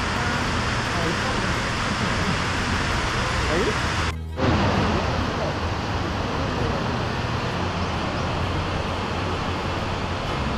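Steady rushing roar of a large waterfall that is partly frozen but still flowing. The sound cuts out for a moment about four seconds in, then comes back a little louder.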